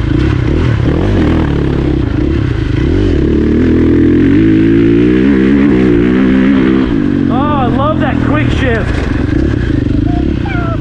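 KTM dirt bike's engine running while ridden along a dirt track, the revs climbing about three to four seconds in and dropping off about seven seconds in.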